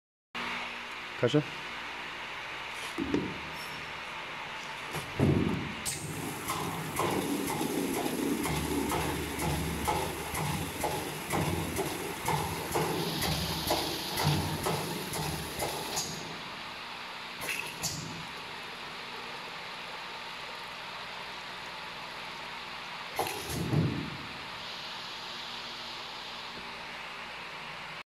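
A W-F700-02 twin-nozzle weigh filling machine filling two plastic pails: liquid pours from both nozzles with a steady hiss for about ten seconds, then stops abruptly. A few knocks and clunks from the machine and the pails come early on and again near the end.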